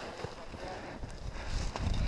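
Footsteps through deep snow with rustling clothing, and low thuds and wind rumble on the body-worn microphone that grow stronger in the second half.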